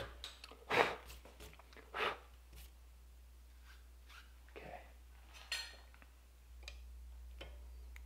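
Two strokes of a hand file cutting the tang slot in a knife guard held in a vise, about one and two seconds in. They are followed by a few light metallic clinks and taps, one with a short ring.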